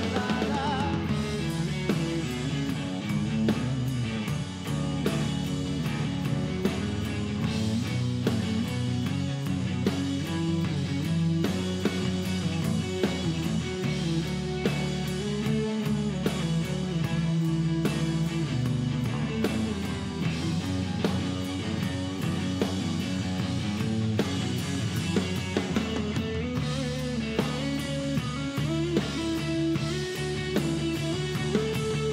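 Live rock band playing an instrumental passage: drum kit, bass guitar and electric guitar.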